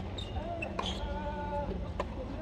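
Tennis rackets striking the ball in a baseline rally: sharp pops about a second apart, at the start, around the middle and at the end, over the steady hum of a large arena.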